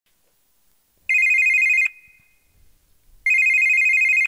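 Telephone ringing with an electronic warbling ring, twice: one ring of just under a second about a second in, and a second ring starting near the end.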